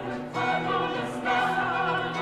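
Mixed chamber choir of men and women singing sustained chords, with a louder entry about a third of a second in and the notes held after it.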